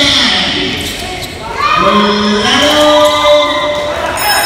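Basketball bouncing on a hardwood gym floor, under a voice that holds long, steady notes.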